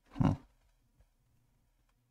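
A man makes one short, loud throat sound close to the microphone, a fraction of a second in, followed by a faint click.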